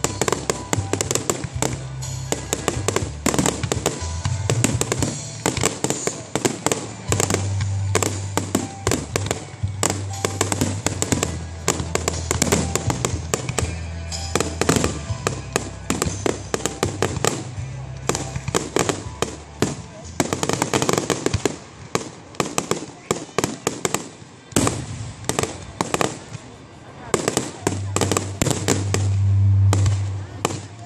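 Aerial fireworks display: a dense, nearly continuous run of shell bursts and crackling reports, several a second with no real pause, loudest in a heavy volley near the end.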